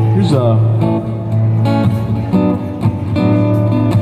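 Acoustic-electric guitar strummed through a PA speaker, playing an instrumental passage with ringing chords that change several times.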